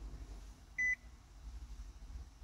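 A single short, high electronic beep about a second in, over a faint low hum.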